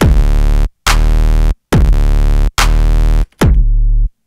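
Xfer Serum soft-synth bass patch, its sub oscillator set to a triangle wave one octave down, playing about five loud, repeated low notes. Each note opens with a quick downward pitch drop and stops abruptly, with short silences between them.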